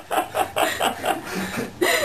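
A woman laughing in quick, repeated short bursts.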